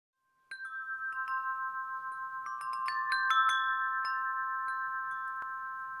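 Bright chime strikes, like a wind chime or glockenspiel, begin about half a second in and come faster around the middle, their ringing notes piling up into a sustained shimmering chord: an intro sound sting for a logo.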